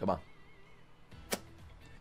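A quick whoosh transition sound effect that falls in pitch, followed by faint background and a single sharp click about a second later.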